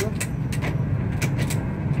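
A steady low mechanical hum, like a running motor, with scattered sharp clicks over it.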